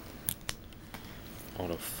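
Two sharp plastic clicks about a third and half a second in, and a fainter one near one second, from hard plastic trading-card holders being handled and set down over a steady background hiss; a man starts speaking near the end.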